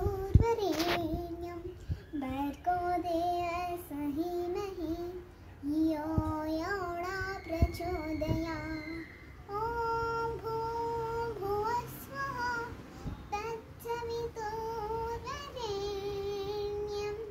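A young child chanting a Sanskrit stotra in a sung melody, phrases held on long steady notes with short breaks between them.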